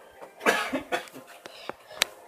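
A person coughing: one hard cough about half a second in, then a smaller one.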